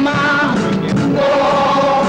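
Carnival chirigota chorus singing together, holding long sustained notes.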